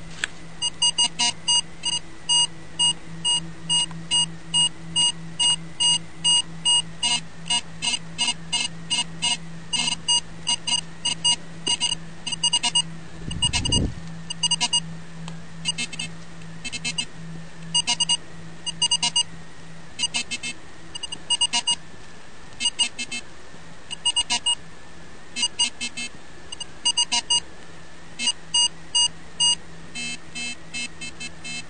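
IGSL metal detector giving short repeated beeps as its coil sweeps over coins, a ring, larger tokens and aluminium foil: mostly a high-pitched tone, with a lower second tone joining it in places. The detector's discrimination is set so the larger tokens give the high tone only, while aluminium foil gives the double tone. A brief dull thump comes about halfway through.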